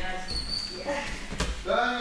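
A single thud of a person's body landing on a thick gym mat during a roll, about one and a half seconds in, with voices talking in the hall.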